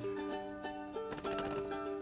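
Background music: plucked strings playing sustained notes, with a few plucked notes in the middle.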